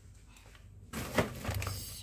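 A plastic shopping bag rustling and crinkling as it is handled, starting about a second in, with one sharp knock just after.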